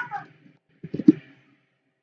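A short tone that falls in pitch, then a quick run of computer keyboard keystrokes about a second in.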